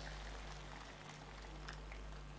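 A faint, steady low electrical hum from the public-address system with soft background noise, in a pause of the speech.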